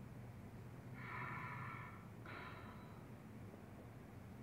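A faint, slow, deep breath taken during a stethoscope lung check: a longer draw starting about a second in, then a shorter, softer one.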